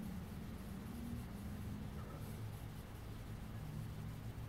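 Wooden pencil scratching faintly on paper while sketching, over a low background hum.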